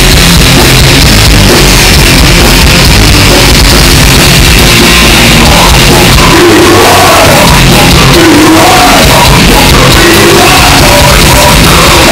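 Live death metal band playing loud, with guitars, bass and drums. Shouted, growled vocals come in about halfway through.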